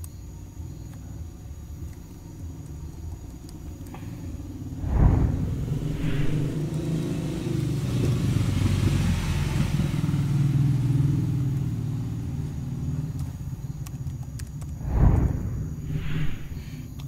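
A low engine rumble, as of a motor vehicle close by, building about four seconds in and fading near the end, with two sudden low thumps, one early and one near the end.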